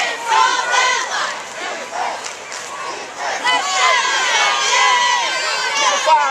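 Crowd of football spectators and sideline voices shouting and yelling together during a play, growing denser and more high-pitched about three and a half seconds in.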